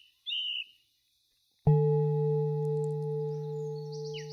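A short bird chirp near the start, then, under two seconds in, a singing bowl is struck and rings on in a steady, slowly fading tone.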